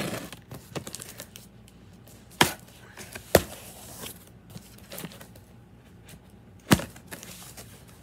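A cardboard shipping box being cut and opened with scissors: three loud, sharp snaps or knocks and several smaller ones, with cardboard rustling and scraping between them.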